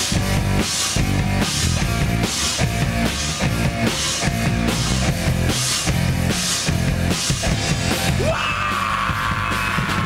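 Live rock band playing: distorted electric guitars, bass and a drum kit keeping a steady beat with regular cymbal crashes. About eight seconds in, a lead guitar takes over with a long held note that slowly bends down.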